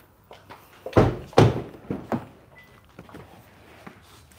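Two heavy thunks about half a second apart: the doors of a 2024 Kia Sorento SUV being shut.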